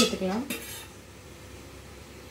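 A voice trails off in the first half-second, then kitchen utensils clatter briefly about half a second in, followed by a faint steady hiss.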